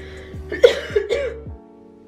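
Background music with plucked strings and a deep repeating beat. About half a second in, a person makes a short, loud, throaty vocal sound lasting about a second. The music then changes to held tones.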